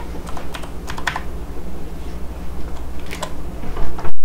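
Typing on a computer keyboard: a quick run of keystrokes in the first second or so, then a couple more about three seconds in, over a steady low hum.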